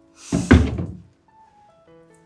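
A single sudden thump with a short rushing noise, about half a second in and over within a second, over soft background music.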